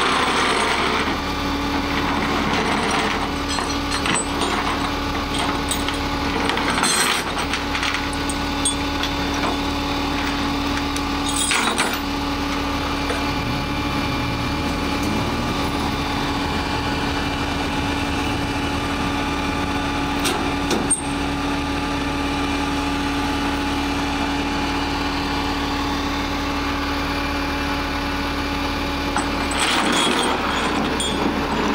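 Vehicle engine idling with a steady, even hum, over the wash of street traffic, with a few short metallic clinks.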